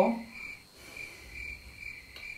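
A faint high-pitched chirping, insect-like, pulsing two or three times a second over quiet room tone.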